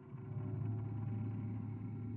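A low steady drone fading in and then holding one pitch, with a rough haze over it: the ambient opening of a heavy song's intro.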